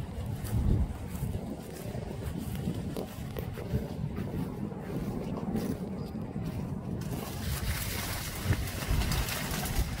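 Wind buffeting the microphone outdoors: a steady low rumble, with a brighter hiss joining about seven seconds in.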